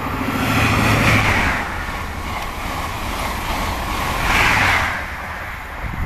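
A diesel High Speed Train (InterCity 125) running through at speed: a steady rush of wheels on rail and air with a low steady engine hum. It is loudest about a second in and again around four and a half seconds.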